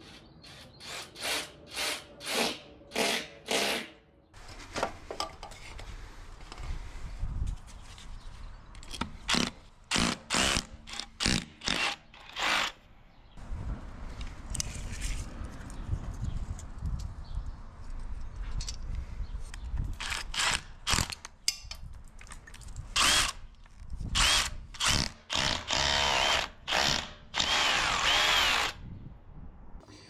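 Cordless drill boring holes for cable cleats into a pebbledash-rendered wall. It runs in many short bursts with pauses between, and in a few longer runs near the end where the motor's pitch rises and falls.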